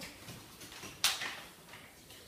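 A single sharp click about a second in from the Jané Micro folding carrycot's fold mechanism as it is collapsed, over faint handling rustle.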